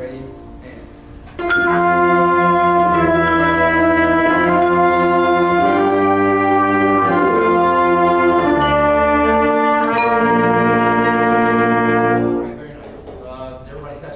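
School band of brass and woodwinds playing a slow warm-up flow study together: a series of about seven sustained half notes (concert F, E, F, G, F, D, B-flat). The band enters about a second and a half in and cuts off together near the end.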